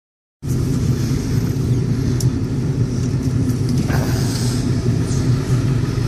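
Pickup truck engine and road rumble heard from inside the cab while driving, a steady low drone that cuts in about half a second in.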